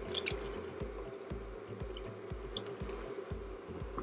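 A spatula stirring a pot of brothy vegetable soup, with small liquid splashes and drips and light clicks against the stainless steel pot. Faint background music with a steady low beat runs underneath.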